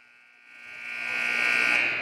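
Public-address feedback: a steady high-pitched squeal that builds louder over a second or so as the announcer's microphone is opened.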